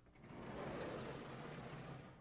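A vertically sliding chalkboard panel being pulled along its track: a continuous rumble that rises just after the start and holds for about a second and a half.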